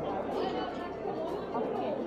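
Indistinct background chatter of many people talking at once, faint, with no single voice standing out.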